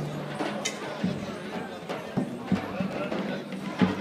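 Background voices talking, with a low held tone and a few sharp knocks, two about two seconds in and one near the end.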